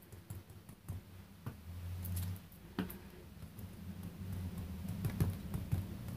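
Small foam ink blending tool dabbing ink onto die-cut paper leaves on a craft sheet: scattered, irregular light taps and clicks.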